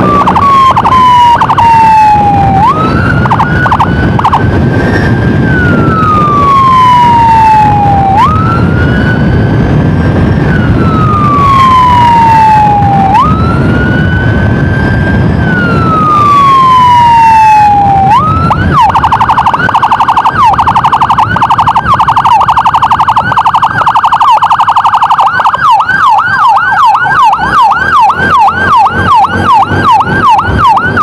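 An emergency siren sounds loud and close in a slow wail, each cycle rising quickly and falling over about five seconds. About two-thirds of the way in it switches to a rapid warble, and near the end to a fast yelp of about two sweeps a second. Motorcycle riding noise lies underneath.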